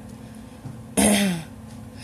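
A woman clearing her throat once, about a second in, a short sound that drops in pitch.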